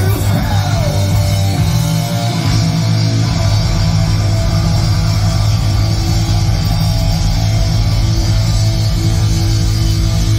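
Heavy metal band playing live at full volume: distorted electric guitar, bass and drums, with a falling pitch glide about a second in.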